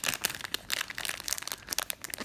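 Clear plastic bag crinkling and crackling in the hands as a stack of trading cards is worked out of it: a run of irregular crackles.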